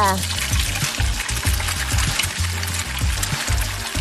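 Egg sizzling and bubbling as it cooks around a skewered sausage inside a vertical electric egg cooker, a steady hiss over background music with a repeating bassline.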